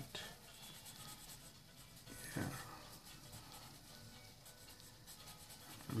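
Pencil scratching on drawing paper in short, repeated shading strokes, faint.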